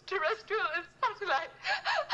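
A woman sobbing as she speaks, her voice wavering up and down in pitch in short broken phrases.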